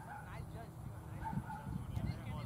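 Faint, distant voices calling out across an open field, in short drawn-out calls, over a low rumble.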